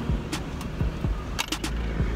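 Short scratchy rasps of a coin scraping the coating off a scratch-off lottery ticket, heard over a low, steady car-cabin rumble.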